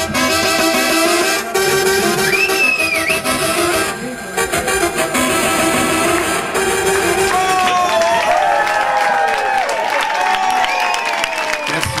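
Electro-swing band playing live, trombone over an electronic backing with a steady beat, ending in long sliding, bending brass notes. The audience starts clapping near the end.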